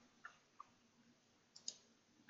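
Near silence, with two faint ticks in the first second and a single sharper computer mouse click near the end, the click that opens a drop-down menu.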